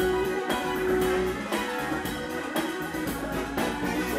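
Live funk band playing with a drum kit, keyboards, electric guitar and a horn section over a steady drumbeat, with a long held note near the start.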